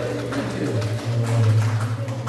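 A low steady hum, growing stronger under a second in, with faint indistinct voices in a room.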